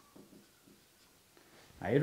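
Felt-tip marker writing on a whiteboard: a quick series of faint short scratching strokes as a word is written, fading out about a second in. A man's voice starts near the end.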